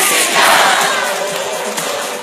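A large crowd shouting and cheering together over loud music: the shout breaks out suddenly, peaks about half a second in, and eases off after about a second and a half.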